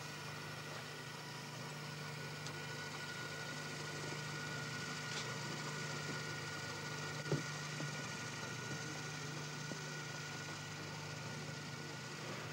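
Steady low hum with an even hiss and a faint steady high tone, the background noise of an old 1980s videotape soundtrack. A single soft knock comes about seven seconds in.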